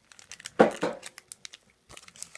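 Foil Pokémon booster pack wrappers crinkling as they are handled, a run of sharp crackles loudest about half a second in, then tailing off.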